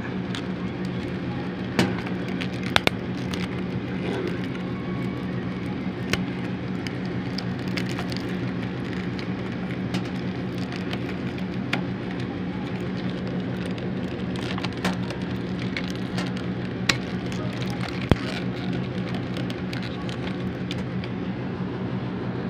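Split-type air conditioner's outdoor condensing unit running with a steady hum, its compressor and fan on again as the unit is tested after its breaker-tripping fault. Light clicks are scattered through the hum.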